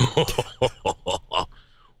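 A man laughing: a quick run of about six short voiced bursts that fade out after about a second and a half.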